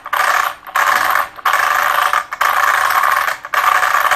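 Metallic rattling from the ZD Racing EX07 RC car's chassis and running gear being worked by hand, in about five bursts of under a second each.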